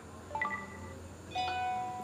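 A phone notification tone playing quietly as a preview while it is picked from the tone list: a few soft chime notes, then a longer held note about one and a half seconds in.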